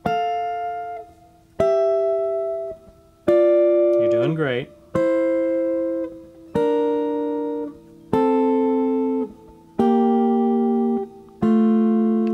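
Semi-hollow electric guitar playing sixths: two notes plucked together on the third and first strings, stepping down the neck one pair about every second and a half, each pair left to ring and fade. About eight pairs in all, each lower than the last.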